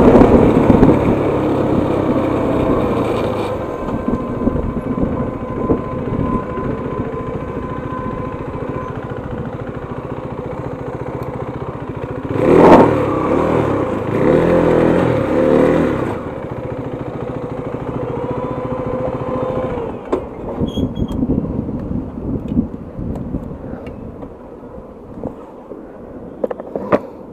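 Motorcycle engine running while riding through traffic, heard from the rider's seat. About halfway through it revs up harder for a few seconds, then eases off and runs more quietly toward the end.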